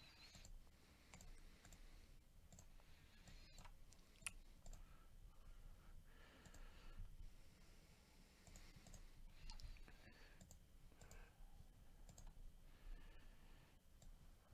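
Near silence broken by a few faint, scattered computer mouse clicks.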